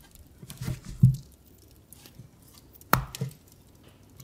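A ferret eating from a stainless-steel bowl close to the microphone: scattered soft knocks, the loudest about a second in, and a sharp click about three seconds in.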